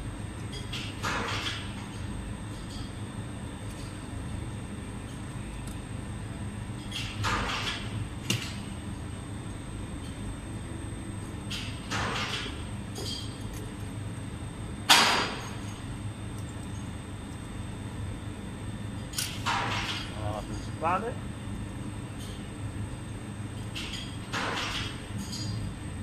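Oil-quenched steel knife blades rubbed and scraped in a box of sawdust to wipe off the excess quench oil: short scratchy rustles now and then, with one sharp knock about halfway through, over a steady low hum.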